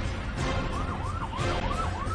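Jingle music with a siren sound effect over it: a fast up-and-down wail, about three or four swoops a second, starting about half a second in.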